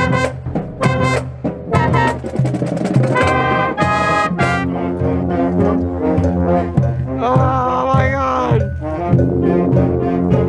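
A marching band's brass section playing loud, close to a trumpet at the player's head. Quick repeated staccato notes run for about the first four seconds, then the band holds chords, and a high brass line bends and falls off about eight seconds in.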